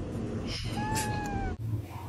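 A cat meows once: a drawn-out call about a second in that falls slightly in pitch.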